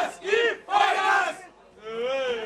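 A group of men shouting together in a few loud bursts: a toasting cheer as beer steins are raised.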